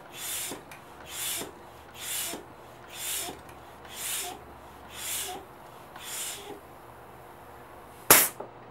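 Floor bike pump being stroked by hand about once a second, each stroke a hiss of air with a faint squeak, seven strokes that stop after about six and a half seconds. It is pressurising the air chamber of a homemade copper pellet gun toward 200 psi.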